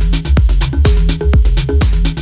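Techno / tech-house music: a steady kick drum about twice a second, with hi-hat hits between the kicks and a repeating low bass line.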